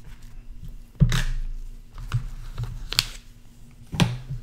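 Silver coins and a plastic-sealed coin being picked up by a gloved hand and set aside. There is a dull knock about a second in, a sharp click near three seconds, and small handling ticks between.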